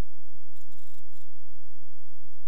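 Sonex light aircraft's piston engine and propeller droning steadily in flight, heard from inside the cockpit as a low, even rumble with a hiss over it.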